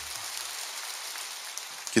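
A large church congregation applauding, a steady even clatter of many hands.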